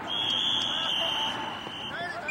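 Referee's whistle: one long, steady, high-pitched blast lasting nearly two seconds, fading somewhat near the end, over faint background voices.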